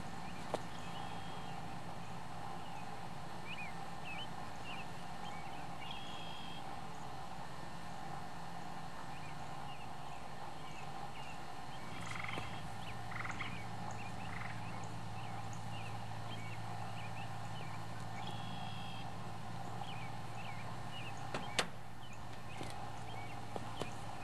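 Many short, high chirping animal calls scattered throughout, over a steady hum, with a couple of brief faint knocks.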